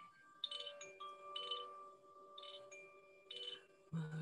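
A handheld Koshi-style bamboo chime, tilted gently so its rods ring in four faint clusters of bell-like tones about a second apart, each cluster ringing on after it sounds.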